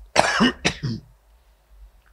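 A man coughing into a close stand microphone, about three coughs in quick succession that stop about a second in.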